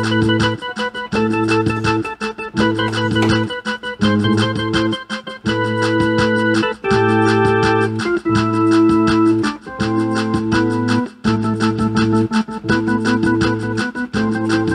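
Instrumental keyboard music: sustained organ-like chords over a steady bass note, changing in blocks about a second long, with a fast ticking beat on top.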